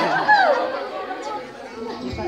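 Speech only: several people chattering in a hall. One voice is loud and clear in the first half second, then the talk goes quieter and more mixed.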